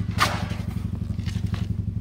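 Car engine idling steadily, heard from inside the car, with a short scraping rustle about a quarter of a second in.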